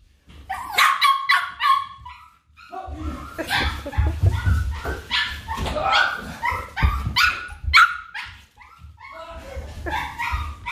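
Small dogs barking and yapping in rapid, repeated short barks, over low thumps of movement close by.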